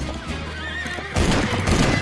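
A horse whinnies. About a second in, a herd of horses breaks into a gallop, with a dense, irregular pounding of hooves on dry dirt, under a music score.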